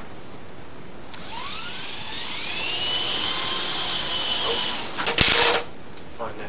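A small Honeybee electric RC helicopter spinning up: a whine that rises in pitch for about a second and a half, then holds steady and stops after about four seconds. A brief, loud clatter follows just after it stops.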